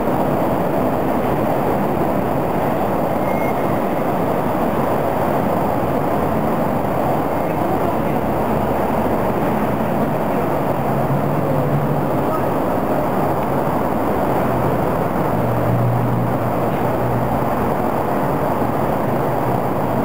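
Steady, even background rumble of vehicle traffic, with a low hum coming in twice, briefly, partway through. The distant fireworks make no distinct bangs.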